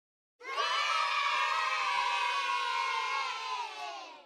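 A group of children cheering together in one long, slightly falling shout that starts suddenly about half a second in and fades away at the end.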